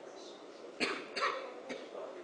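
A person coughing twice in quick succession, two short sharp bursts about a third of a second apart, heard over faint room noise.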